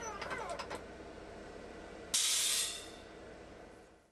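Portable high-pressure air compressor running while filling a PCP air rifle's air cylinder. About two seconds in, a loud hiss of released air lasts about half a second and trails off, as the fill line is bled through the compressor's bleed valve.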